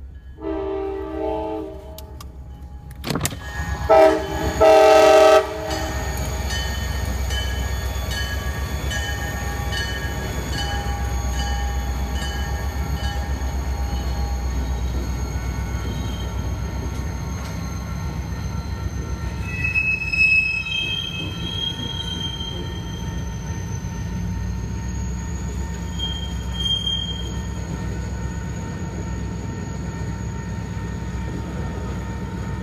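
Freight train horn sounding two blasts, a short one near the start and a longer, louder one about four seconds in. Then a steady low rumble as a string of tank cars rolls past over the crossing, with brief high wheel squeals about 20 and 27 seconds in.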